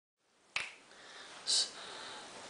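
A single sharp click about half a second in, then a short high hiss about a second later, over faint room tone.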